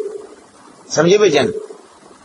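A man's voice speaking two short phrases, each ending in a drawn-out held vowel, with a pause between them.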